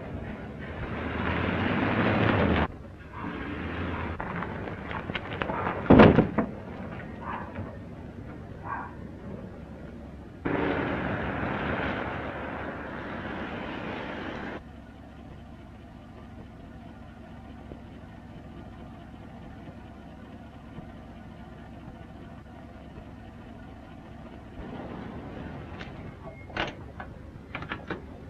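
Old truck's engine pulling away and driving along the road, in two stretches of engine noise that each stop abruptly, with a sharp knock about six seconds in. After that a quieter steady hum, and a few clicks near the end.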